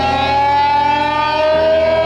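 Live rock band with an electric guitar holding a long sustained lead note that slides slowly upward in pitch over a steady bass; a second, lower note comes in about one and a half seconds in.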